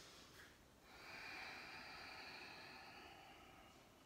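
Faint breathing of a person holding the yoga pose downward-facing dog: the end of one breath, then one long, slow breath from about a second in until near the end.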